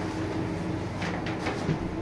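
Shower curtain being drawn along an overhead roller track, with a few faint rolling scrapes and rustles about a second in, over a steady low hum.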